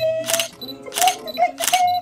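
Camera shutter sound effect clicking three times, about two-thirds of a second apart, over background music.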